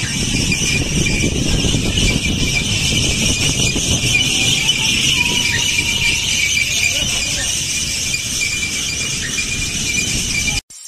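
A steady, shrill high-pitched squeal goes on without break, over wind rumbling on the microphone as the amusement ride swings round.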